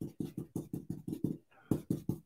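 Ink-blending brush scrubbed quickly over a stencil on cardstock: a rapid run of soft swishing strokes, about seven a second, with a short pause near the end before a few louder strokes.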